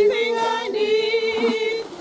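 A small group of women singing unaccompanied, holding long, wavering notes, with a brief pause between phrases near the end.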